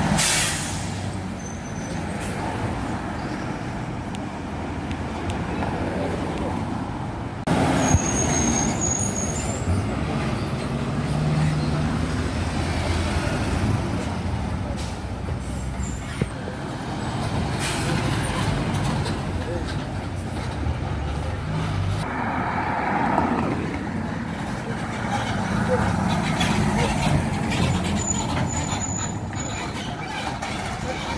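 Diesel city buses passing close and pulling away from a stop, their engines running under the steady noise of traffic. There is a loud, short hiss right at the start, and more sudden hisses later, typical of bus air brakes.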